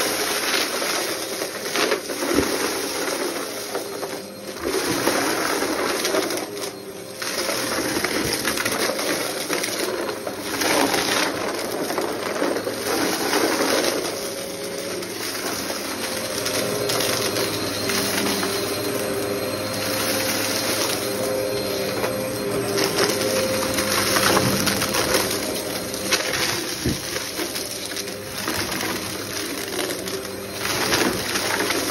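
Upright vacuum cleaner running on carpet and picking up scattered debris: a steady motor hum with frequent clicks and crackles as bits rattle up through it.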